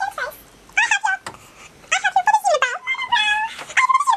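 A string of about five high-pitched, meow-like calls, each rising and falling in pitch.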